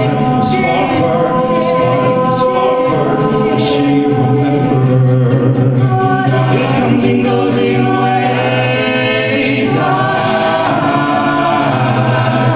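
Live a cappella group singing: a male lead voice over sustained multi-part vocal backing harmonies, with no instruments, amplified through stage microphones.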